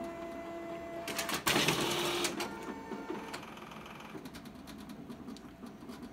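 Toshiba 4505AC copier's dual-scan document feeder scanning a sheet. A steady motor whine comes first. About a second and a half in, a louder burst of mechanical feeding noise starts, then eases into a quieter run with light clicks.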